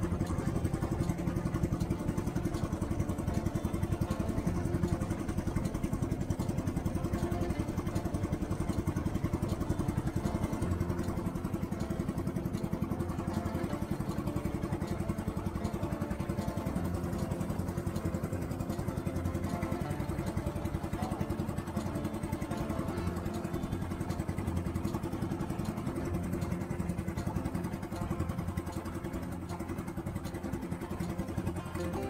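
Small fishing boat's engine running steadily while the boat trolls under way.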